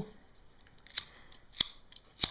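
Long-reach utility lighter's trigger clicking twice, about half a second apart, without catching a flame: the lighter is failing to light, which she takes for a dead lighter.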